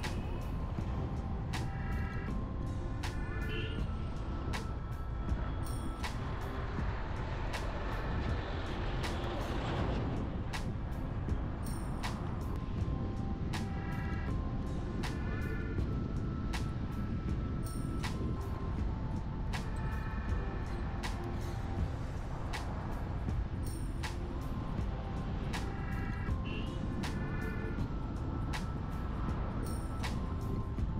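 Steady low road and engine rumble of a car driving, heard from inside, under music with a repeating melody and light percussion.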